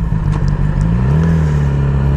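2008 Yamaha YZF R6's 600cc inline-four engine running on the move, its pitch rising about a second in and then holding steady over a low rumble.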